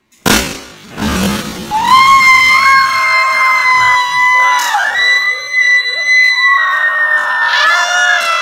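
A large Orbeez-filled balloon bursts with a sharp pop and a short rush as its contents spill out. Then high-pitched screams from two voices, held steady in pitch, run on for about six seconds with a brief break midway.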